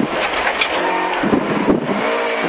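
Rally car engine and road noise heard from inside the cockpit, the engine pulling hard in first gear through a slow, tight right-hand corner.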